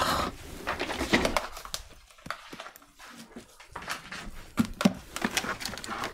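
Scattered clicks, knocks and rustles of a cable being handled and pulled free from an office chair's castors under a desk, with short breathy grunts of effort.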